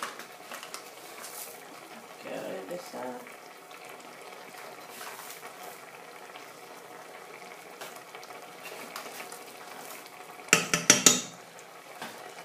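Homemade chili sauce of tomato, onion and peppers cooking in oil in a saucepan, giving a steady faint bubbling crackle. Near the end comes a short, loud clatter of sharp knocks lasting about a second.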